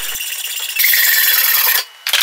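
A hand file scraping across a flattened metal pipe clamped in a bench vise: a lighter scraping, then one louder, longer stroke about a second long that stops abruptly near the end.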